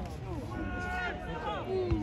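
Several people's voices calling out and talking over one another across an open football pitch, with a cough near the start.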